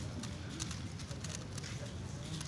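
A Megaminx puzzle being turned fast in a speedsolve: quick, irregular plastic clicks and clacks as its faces snap round, several a second.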